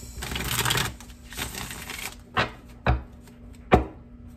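A deck of cards shuffled by hand: two rustling bursts of shuffling in the first two seconds, then three sharp taps, the last the loudest.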